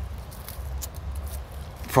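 Faint rustling and a few light crackles of leaves being handled on a young canistel tree, over a steady low rumble.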